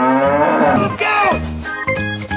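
A cartoon cow mooing: one long drawn-out moo that bends up and down in pitch, then a shorter falling call about a second in. Background music with a bouncy, stepping melody takes over for the second half.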